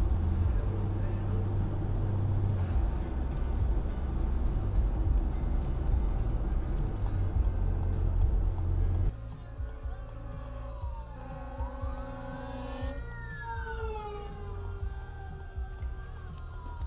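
Steady low road rumble heard from inside a moving car for about the first nine seconds. Then, after a sudden drop in level, emergency sirens wail, with several overlapping tones sweeping up and down in pitch, from a fire engine with its lights on ahead.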